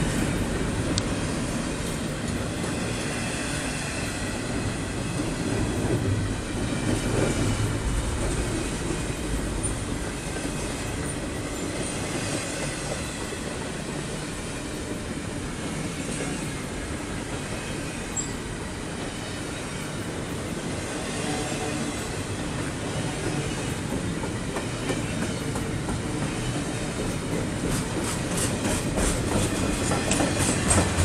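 Double-stack container train's well cars rolling past at close range: a steady rumble and rattle of steel wheels on the rails, with a quick run of wheel clicks over rail joints near the end.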